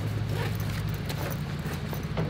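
A baseball bag being rummaged through: faint rustling and a few light knocks of gear, over a steady low hum.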